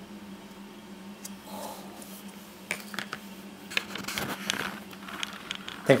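Plastic dessert moulds being handled and lifted off panna cottas on china plates: a scattering of short clicks and light scrapes of plastic on china, mostly from about three seconds in, over a steady low hum.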